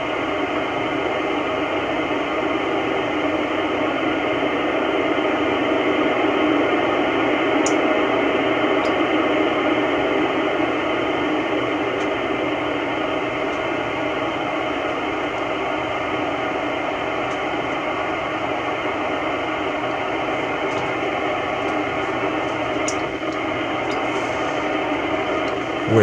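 Icom IC-9700 receiving the AO-91 FM satellite downlink: a steady hiss of FM static through the radio's speaker, the satellite signal weak and being lost.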